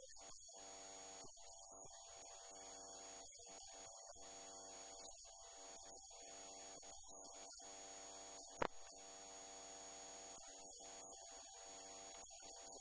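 Near silence with a faint steady electrical hum in the recording. One sharp click about eight and a half seconds in.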